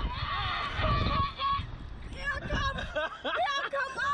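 Two riders on a slingshot reverse-bungee ride screaming and laughing in flight, in long held, wavering cries, with wind rumbling on the microphone.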